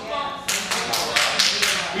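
A short run of about six hand claps, roughly four a second, starting about half a second in, with faint voices at the start.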